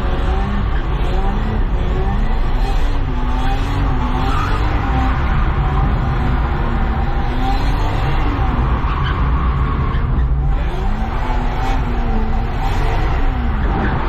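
A car's engine heard from inside the cabin while drifting, its revs rising and falling over and over under a heavy steady rumble, with tyres skidding on the track surface. The revs drop briefly about ten seconds in.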